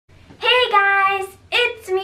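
A young girl singing one long held note that falls slightly in pitch, followed by a shorter sung syllable near the end.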